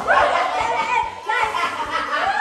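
Excited shouting and cheering from a group of children and adults, several high-pitched voices overlapping, with a short lull a little past the middle.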